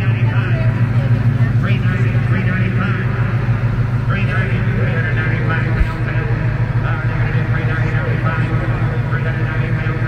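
Reverberant crowd-and-PA sound of a car auction: indistinct amplified auctioneer's voice and crowd chatter over a strong steady low hum, with one brief low thump just before six seconds.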